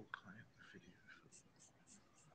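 Near silence with faint, hushed talk away from the microphone.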